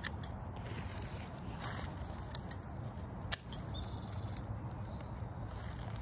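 Hand pruning shears snipping through small Japanese maple branches: a few sharp, spaced-out clicks, the loudest a little after three seconds in, over a steady low background rumble.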